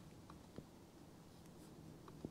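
Near silence: room tone with two faint short clicks in the first second.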